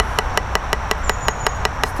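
Drumsticks striking a rubber drum practice pad on a stand in a quick, even run of single strokes, about eight hits a second.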